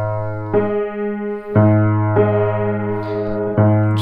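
Low bass notes of a c1870 Hagspiel grand piano struck one after another, about four times, each left ringing and slowly dying away. The piano is well out of tune from standing a long time untuned: its A sits at about 419 instead of 440, and the bass end is a lot sharper than that.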